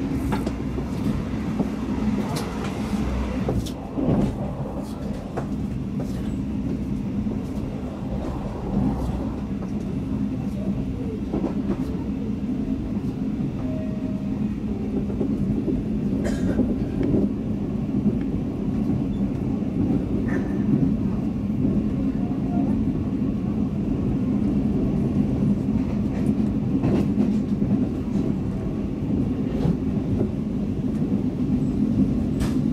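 A moving passenger train heard from inside the carriage: a steady low rumble of the wheels running on the rails, with occasional sharp clicks and knocks.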